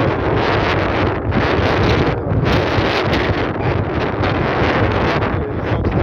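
Strong wind buffeting the camera microphone: a loud, continuous rumbling rush that swells and eases in gusts.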